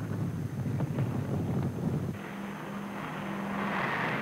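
Propeller fighter aircraft engines: a low rumble, then about two seconds in an abrupt change to a steady engine drone with a swelling rush of air as a fighter takes off.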